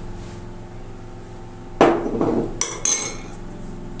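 Kitchenware knocking: a glass bowl and metal spoon against a metal sieve. One sharp knock comes about two seconds in, followed by a few lighter, ringing clinks.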